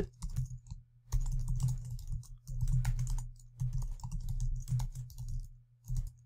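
Typing on a computer keyboard: keystrokes come in irregular runs, with a short pause about a second in and another near the end.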